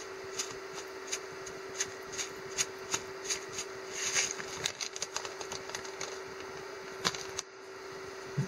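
Furikake shaken from its packet onto a bowl of rice: quick light rattles of the dry granules in the bag, about two to three shakes a second, then a crinkle of the packet about four seconds in and a few softer taps, with one sharp click near the end.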